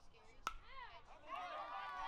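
A single sharp crack about half a second in as the pitched baseball strikes at home plate, then several voices shouting together through the second half.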